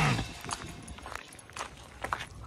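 Music cutting off just after the start, then faint, irregular footsteps crunching on a gravel path.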